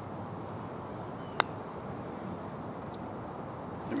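A single sharp click of a putter striking a golf ball, about a second and a half in, over a steady outdoor background.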